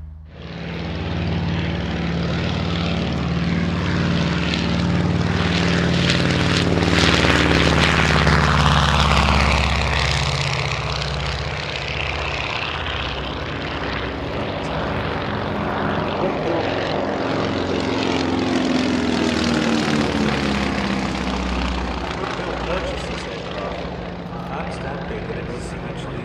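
Twin radial engines of an Avro Anson Mk.1 droning with propeller noise through a low flying display pass. The sound swells to its loudest about a third of the way in as the aircraft passes, then eases, with the engine pitch sliding up and down as it manoeuvres.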